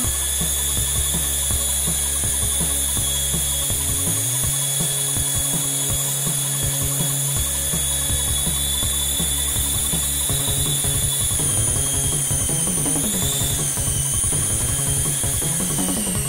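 High, steady whine of a micro air vehicle's small electric rotors running, wavering briefly in pitch near the end, over electronic music with a heavy bass line.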